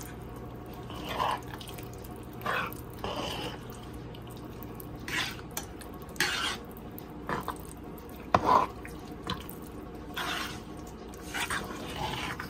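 Thick sweet pongal with milk simmering in a pot, bubbling up and plopping in short, irregular blips about once a second, with one sharper click.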